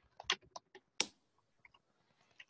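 Computer keyboard typing: a handful of scattered keystrokes, the loudest about halfway through.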